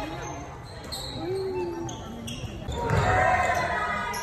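Basketball game in a gymnasium: a ball bouncing on the court and short high squeaks, under the voices of players and spectators calling out. The voices grow louder about three seconds in.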